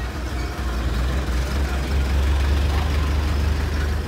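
A Hino truck's diesel engine running with a steady low rumble, swelling slightly partway through.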